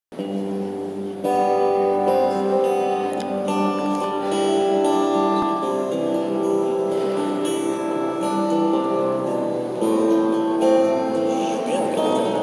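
Acoustic guitar playing a slow song introduction live, its plucked notes ringing on and overlapping in a reverberant church.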